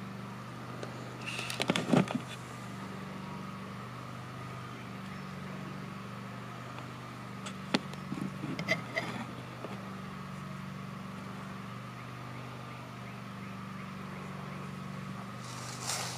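A steady low hum runs throughout, with brief rustles and clicks about two seconds in and again around eight to nine seconds.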